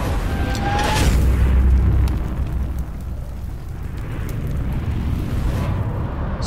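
Intro sound effect: a fiery whoosh about a second in over a deep booming rumble, which dies away over the next few seconds.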